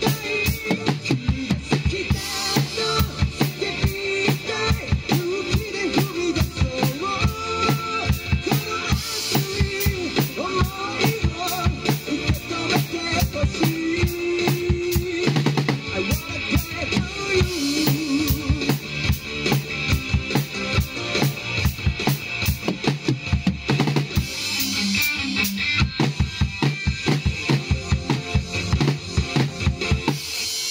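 Acoustic drum kit played live with a steady beat of bass drum, snare and cymbals, over recorded backing music with a sustained melody.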